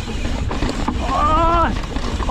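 Yeti SB150 full-suspension mountain bike descending a rough, dry dirt trail: steady wind rumble on the microphone with tyre and frame chatter. A rider's voice calls out once, briefly, about a second in.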